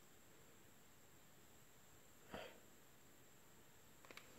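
Near silence: room tone, broken by one short, soft noise about two seconds in.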